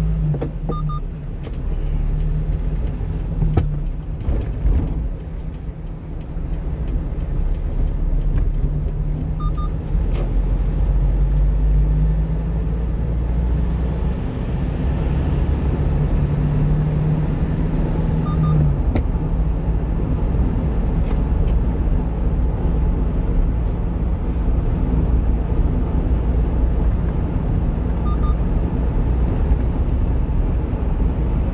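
Engine and road noise of a 1-ton refrigerated box truck on the move: a steady low engine drone over tyre and road noise, the engine note climbing for several seconds around the middle and then dropping back.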